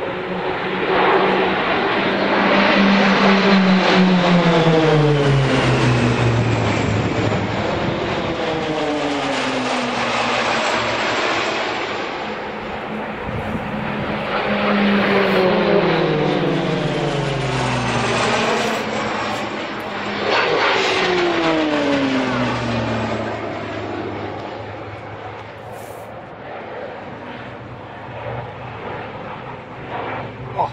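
Pilatus PC-9/A turboprop aircraft flying past overhead in formation, their engine and propeller drone dropping in pitch as each wave of aircraft passes. The loudest passes come a couple of seconds in, around fifteen seconds and around twenty seconds, and the sound fades near the end.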